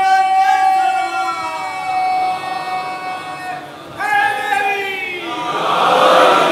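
A congregation chanting together in long held notes, swelling into a louder burst of many voices near the end.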